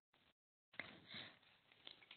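Near silence: faint line hiss in a pause of a webinar call, with a couple of faint, short soft sounds about a second in.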